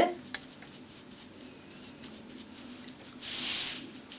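Faint scratchy rubbing of a flat paintbrush loaded with gold metallic paint being wiped on a paper napkin to offload the excess for dry-brushing, then a soft hiss a little after three seconds in.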